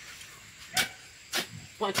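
Two chops of a hoe into dry, sandy soil, a little over half a second apart, digging a hole to replant cassava.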